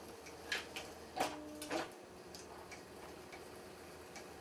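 A few light, irregular plastic clicks and taps from hands working on an Apple StyleWriter inkjet printer, bunched in the first two seconds, then quieter. A faint steady hum runs underneath.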